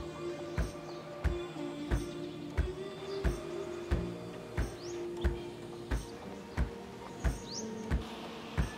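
Background music with a steady beat, about three beats every two seconds, over held chords.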